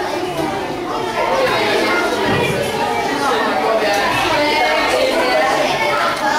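Several people talking at once in a large room: overlapping chatter with no single clear speaker.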